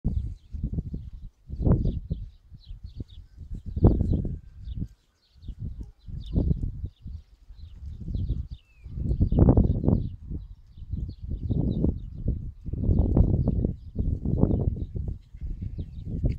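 Wind buffeting the phone's microphone in irregular low gusts, with faint quick ticks higher up.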